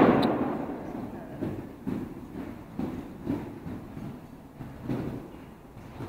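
Hoofbeats of a horse cantering on a soft indoor arena surface: dull thuds at uneven intervals, growing a little stronger as it comes near. A loud noise that began just before fades away over the first second.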